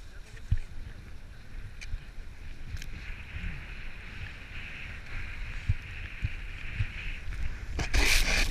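Snowboard sliding through powder snow: a steady hiss of the base on the snow, louder from about three seconds in, over the low rumble of wind on the helmet-mounted camera, with a few faint knocks. Near the end a loud rush of sprayed snow as the board digs in.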